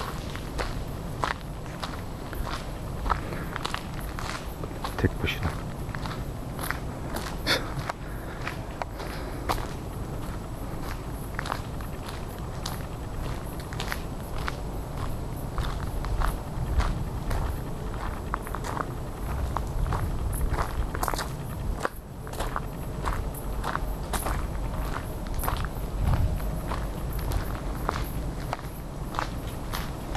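Footsteps of one person walking at a steady pace on a dirt forest path, each step a short crunch, over a low rumble.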